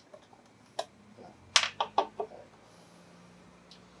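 A few sharp little metallic clicks and taps from a screwdriver and screws on a CB radio's steel cover: one click a little under a second in, then a quick run of four or five clicks about a second and a half in.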